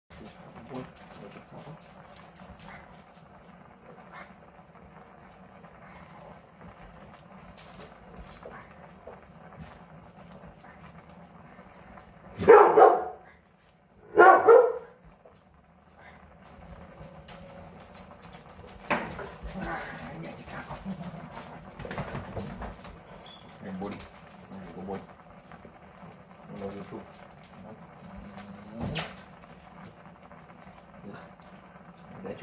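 A Labrador retriever barks twice, about two seconds apart near the middle; these are the loudest sounds. Shorter, quieter dog sounds come now and then afterwards.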